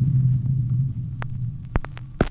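Logo-sting sound effect: a deep rumbling drone that slowly fades, with a few short sharp clicks in the second half.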